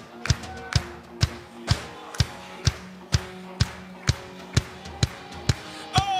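Live worship band playing an instrumental passage: drums keeping a steady beat at about two hits a second under held electric guitar chords.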